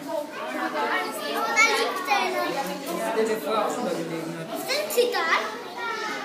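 Overlapping children's voices chattering and calling out, with two sharper calls about a second and a half in and again near the end.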